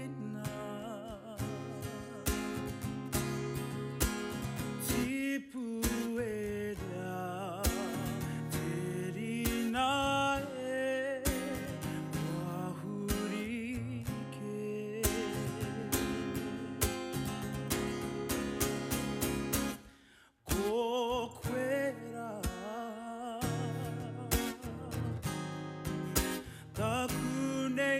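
A man singing solo with vibrato, accompanying himself on a strummed acoustic guitar; the music drops away briefly about twenty seconds in.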